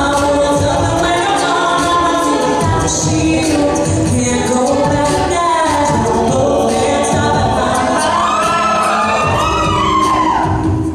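Co-ed a cappella group singing a pop cover: a female lead voice over layered backing vocal harmonies, with a steady low beat underneath. Near the end one voice slides up and down in a run.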